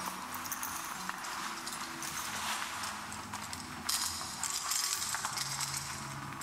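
Lo-fi experimental noise recording: a steady hiss with scattered clicks over faint low droning tones, then a louder, brighter burst of noise about four seconds in.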